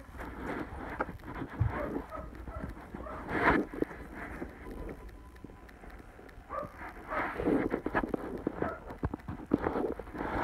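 A dog moving about right up against the phone: irregular rustling and soft knocks, louder about three and a half seconds in and again from about seven seconds in.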